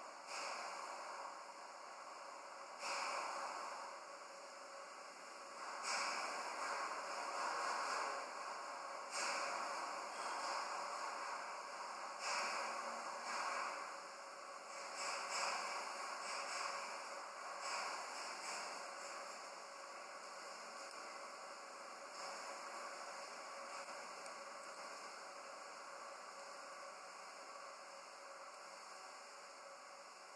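Quiet room tone with a steady hiss, and faint breath-like noises coming and going about every three seconds, dying away in the last third.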